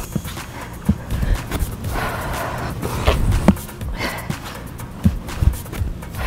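Irregular dull thuds and rustling from a person doing half burpees on an exercise mat laid on grass, feet landing as she jumps back to a plank and forward to a crouch. Background music plays underneath.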